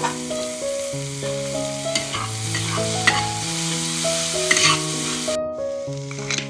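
Sliced mushrooms and minced garlic sizzling in hot oil in a stainless steel wok, stirred with a utensil that scrapes the metal pan a few times.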